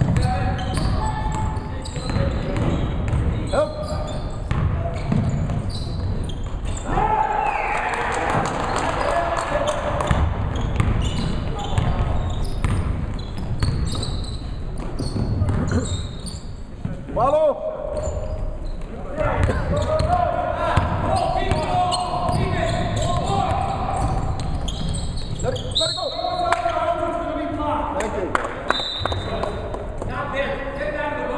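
Basketball being dribbled and bounced on a hardwood gym floor during a game, mixed with players' and spectators' shouting, echoing in a large gymnasium.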